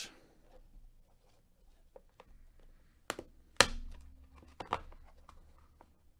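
Hard plastic graded-card slabs and their clear plastic case clicking and knocking together as they are handled. Two sharp clacks come about three seconds in, the second the loudest, and another follows about a second later.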